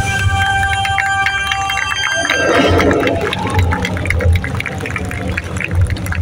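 Loud stage soundtrack played through PA loudspeakers: held tones over a pulsing low beat for about two seconds, then a short rush of noise and many rapid sharp hits.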